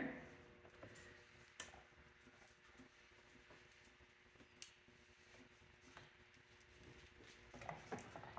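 Near silence: the faint steady hum of an electric pottery wheel running, with a couple of faint clicks.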